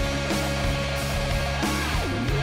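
Rock band playing an instrumental passage with electric guitar and drums, no vocals.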